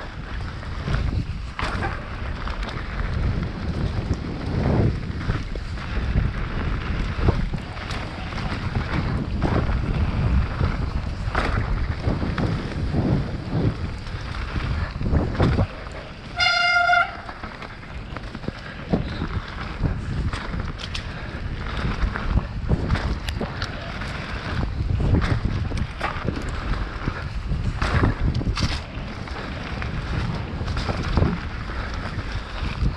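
Mountain bike riding down dirt singletrack, recorded on a camera mounted on the bike or rider: wind buffeting the microphone over a steady rumble of tyres on dirt, with frequent knocks and rattles from bumps. About halfway through there is one brief high-pitched squeal.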